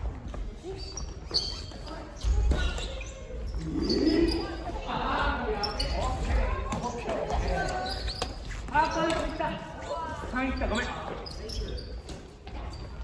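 Rackets striking a shuttlecock and shoes on a wooden gym floor during a family badminton rally: scattered sharp hits in a large hall. Players' voices call out through the middle of the rally.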